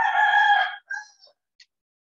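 A loud, drawn-out animal call with a clear pitch, lasting about a second, followed by a shorter call, then a faint click near the end.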